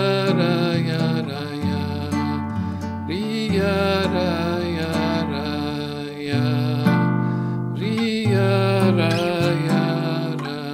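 Nylon-string classical guitar playing a bossa nova chord introduction in D minor, starting on G minor seventh: plucked chords that ring and change about every second, with a few sliding notes.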